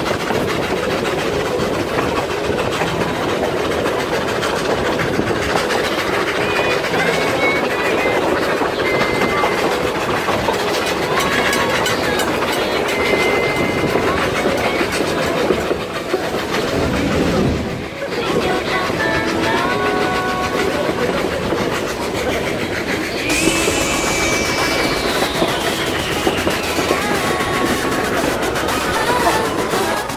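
Steam train running on the rails: a steady rumble and clatter of the wheels and carriages.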